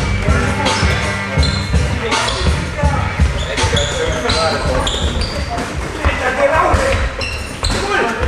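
Hip-hop track playing, with a heavy, regular beat and rapped vocals.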